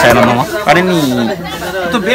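Speech only: a man talking in Nepali into a handheld microphone.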